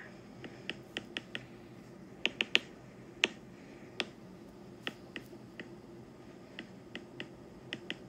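Irregular sharp clicks of a stylus tip tapping on a tablet's glass screen while writing, about eighteen in all, with the loudest a quick run of three a little past two seconds in.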